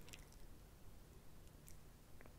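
Near silence with a few faint, wet mouth clicks close to the microphone.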